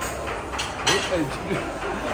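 Mainly speech: a short spoken phrase about a second in, over a steady low background noise.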